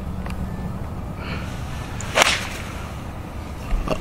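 A golf tee shot with a pitching wedge: one sharp, crisp strike of the clubface on the ball about two seconds in.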